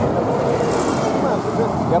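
A road vehicle passing close by at speed: tyre and engine noise swells to a peak a little under a second in, then fades.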